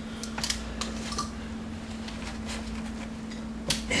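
Pliers clicking and scraping against a plastic nail-on outlet box while gripping it to work it out of the wall: a few scattered light clicks, the sharpest near the end, over a steady low hum.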